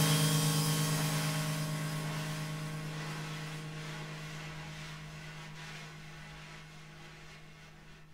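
The last held chord of a keyboard-and-drum-kit improvisation ringing out: a low, steady keyboard drone with a hissing wash of cymbal above it. It fades away evenly until it is barely audible by the end.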